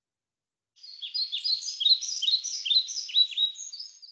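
Recorded birdsong opening a textbook listening track: quick repeated chirps and short falling whistles, starting about a second in.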